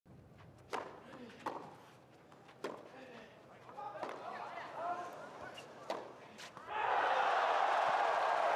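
Tennis ball struck by rackets during a point on a clay court: a serve and a rally of sharp hits about a second apart, with a voice calling out in the middle of the point. About seven seconds in, loud crowd noise and applause break out and hold steady.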